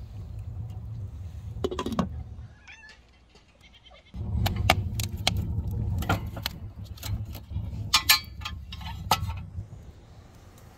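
Sharp clicks and knocks at the open firebox of a small metal wood-burning stove as the fire is tended with a hand, over a steady low rumble. The sound drops to a lull about two and a half seconds in, then comes back suddenly about four seconds in, and the clicks are thickest in the second half.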